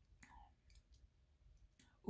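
Near silence, with a few faint, scattered mouth clicks and lip smacks from someone tasting a sip of wine.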